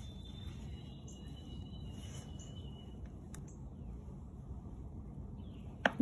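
Quiet outdoor ambience: a steady low rumble with a few faint, thin, high whistled calls. There is a single sharp click a little past the middle and a short loud sound right at the end.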